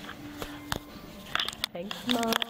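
Brief, quiet talk between women, with a few sharp clicks and a steady low hum in the first part; a short "okay" near the end.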